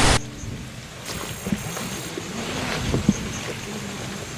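A loud burst of TV-static noise that cuts off just after the start. Then a steady hiss of outdoor night ambience with wind noise on the microphone and a few faint clicks.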